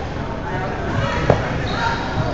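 A volleyball bouncing on a hardwood gym floor, one sharp thud about a second and a half in, over players' voices and chatter in the hall.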